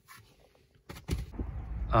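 A couple of faint clicks, then wind rumbling on the microphone from about a second in.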